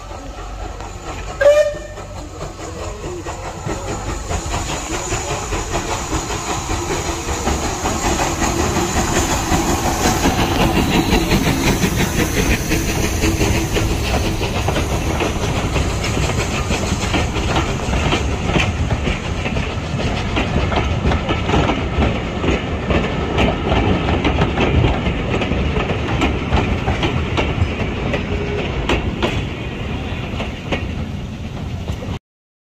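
A steam-hauled passenger train drawing near and passing close by, with a short whistle blast about a second and a half in. The rumble of the locomotive gives way to the steady clatter of the coaches' wheels over the rail joints as the carriages roll past.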